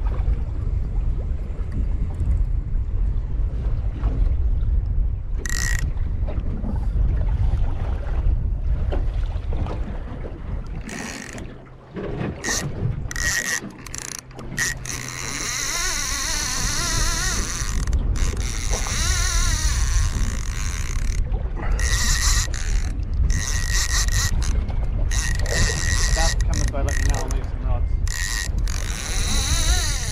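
Overhead fishing reel's drag clicking in repeated bursts as a hooked fish takes line, starting a few seconds in and growing more frequent in the second half. Wind buffets the microphone throughout.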